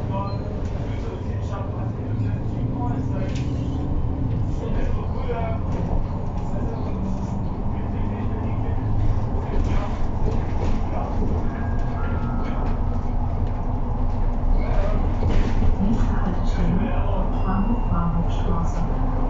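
Cabin noise inside a MAN natural-gas city bus under way: a steady low engine and road rumble that grows a little louder over the second half as the bus gathers speed.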